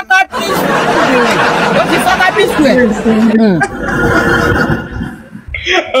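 Many voices talking and laughing over one another, loud for about three seconds before thinning out to quieter talk.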